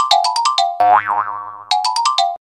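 Comic cartoon background music of short, sharply struck notes stepping up and down, with a springy boing sound effect about a second in whose pitch bends up and back down before the plucky notes resume.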